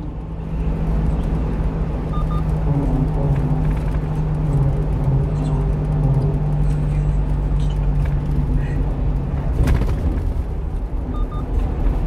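Steady engine drone and road noise inside a 1-ton box truck's cab at expressway speed, with one short sharp sound about ten seconds in.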